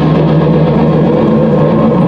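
Live metal band's distorted electric guitars and bass held in one loud, steady droning chord through the amplifiers, with no drum hits.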